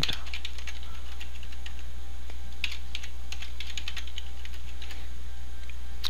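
Computer keyboard typing: a scattered run of quick key clicks, busiest about halfway through, over a steady low hum.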